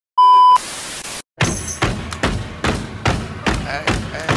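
A short, loud electronic beep, then a burst of static-like hiss. After a brief gap, a steady run of thumps about two to three a second begins, mixed with voices.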